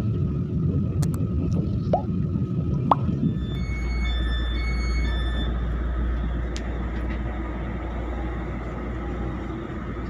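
Passenger train carriage interior: a steady low rumble of the train running, with a few short electronic beeps about four to five seconds in.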